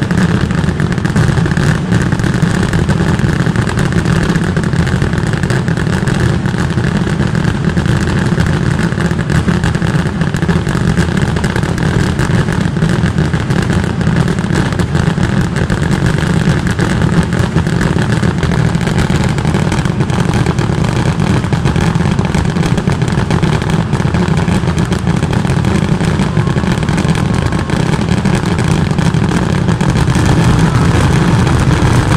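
A massed barrage of voladores (stick rockets) bursting in rapid, overlapping succession, the bangs running together into a continuous loud roar with no pause.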